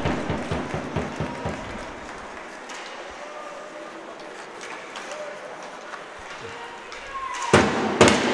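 On-ice sounds of an ice hockey game in a near-empty rink: sticks, puck and skates knocking, with a run of sharp knocks in the first second or two, then a quieter stretch of hall sound.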